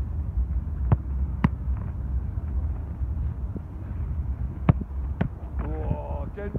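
Wind rumbling on the microphone outdoors, with four short sharp knocks: two about a second in, two near the end.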